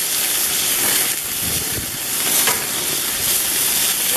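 Beef burger patties sizzling on a grill grate over open flames, a steady hiss, with one light click about halfway through.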